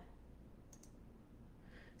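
Near silence, with a faint click a little under a second in, from the computer mouse or keyboard advancing the presentation slide.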